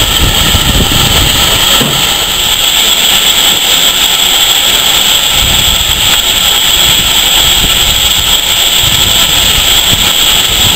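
Steam locomotive venting steam: a loud, steady hiss that runs on without a break, over an uneven low rumble.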